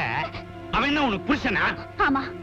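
Spoken film dialogue over steady background music.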